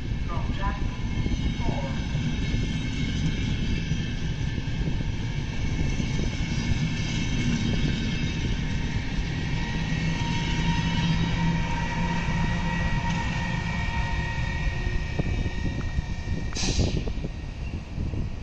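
VR double-decker Intercity train rolling slowly past on electric-locomotive haulage: a steady rumble of wheels on rails, with a faint steady electric whine in the middle as the locomotive goes by. There is a single sharp click near the end.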